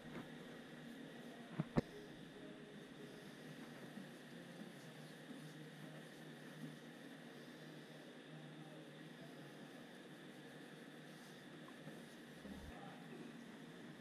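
Faint, soft strokes of a paintbrush spreading Poly-Brush coating across an aircraft wing's leading edge, over quiet room noise, with two sharp clicks close together just under two seconds in.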